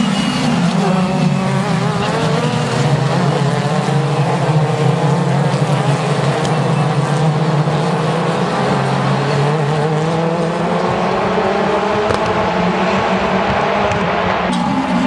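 Several prototype race cars' engines running hard and overlapping, their pitches rising and falling as the cars brake, shift and accelerate past.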